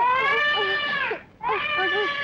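Distressed human wailing: two long, held cries with a slight waver, the second starting about a second and a half in.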